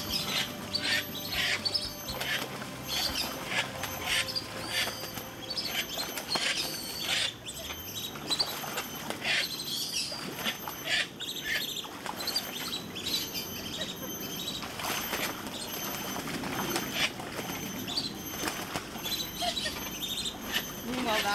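Ducks scuffling in a shallow pool: irregular splashing and wing flapping that churns the water, coming in many short bursts.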